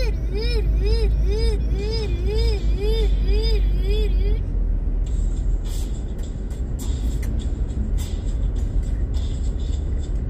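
Steady low rumble of a car driving, heard from inside. For the first four seconds a pitched tone rises and falls about twice a second, nine times in a row, then stops suddenly.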